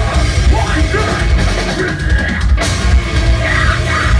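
Live rock band playing loudly, with a heavy drum kit and electric guitars; a short break in the top end a little past halfway is followed by a sharp hit on the drums.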